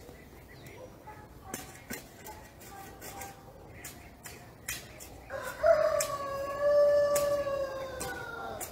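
A rooster crows once, one long call of about three seconds beginning past the middle. Short chopping knocks of a hoe cutting into garden soil sound throughout.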